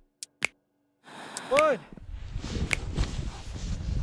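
Snowboard sliding and scraping over snow, rough and uneven, building louder toward the end. A short rising-then-falling shout comes about a second and a half in.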